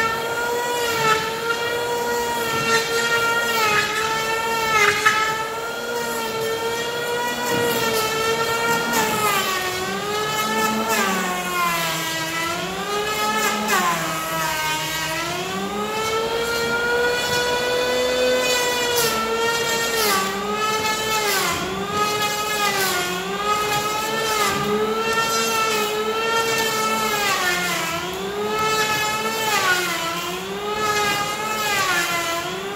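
Electric hand planer whining as it cuts along a Korean red pine slab, its motor pitch dropping each time the blades bite on a pass and rising again as it eases off, with a deep, long drop around fourteen seconds in.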